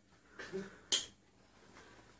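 A single sharp click just under a second in, after a brief fainter sound.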